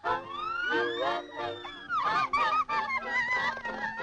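Cartoon mice squeaking and chattering in high, honking voices: a rising squeal near the start, then a quick run of wavering squeaks that slide up and down in pitch.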